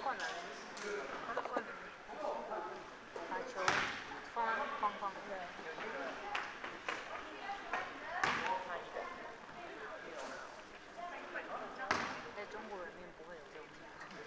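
A basketball bouncing on a sports-hall floor: three separate thuds a few seconds apart, ringing in the hall, over indistinct voices.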